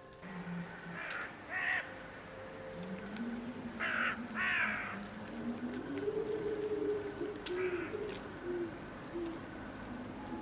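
Crow cawing in short, harsh calls, two near the start, two about four seconds in and one near eight seconds, over a low, slowly wavering tone.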